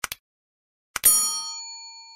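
Subscribe-button sound effect: two quick mouse clicks, then about a second in another click and a bright bell ding that rings on and slowly fades, the notification-bell chime.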